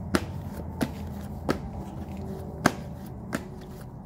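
A deck of tarot cards being shuffled by hand, with five sharp card snaps at uneven intervals over a steady low hum.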